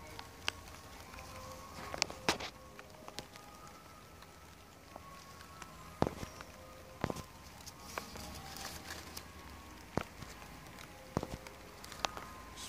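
Handling noise as a hand holds an apple on the tree among its leaves: scattered sharp clicks and light rustles, one every second or two, over a faint background with a few held tones.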